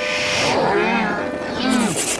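Pitch-shifted, warbling voice-like sound from a logo remix soundtrack run through a 'G Major' audio effect, rising and falling like a moo. It comes in two swoops, the second one shorter.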